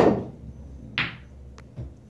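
Pool cue striking the cue ball with a sharp clack, then about a second later a second click as a ball hits another ball on the table.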